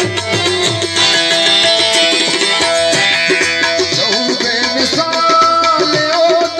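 Live Brahvi folk music played loud through a PA, with harmonium and hand drum keeping a steady beat.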